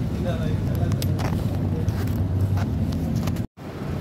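A steady low rumble with brief snatches of a voice. The sound cuts out completely for a moment near the end.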